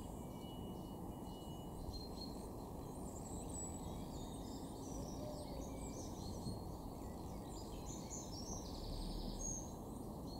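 Outdoor ambience: a steady low background rumble with many small birds chirping and singing faintly in short high-pitched notes, a little busier near the end.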